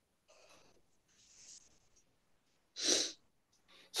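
A person breathing close to the microphone: two faint breaths, then one short, sharper breath about three seconds in.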